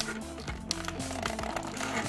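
Background music with held low notes that shift every half second or so. A few light clicks come from clear plastic blister packaging being handled.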